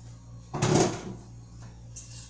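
A single short knock or thud about half a second in, over a steady low hum.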